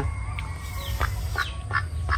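A white domestic duck calling: three short, sharp calls in the second half.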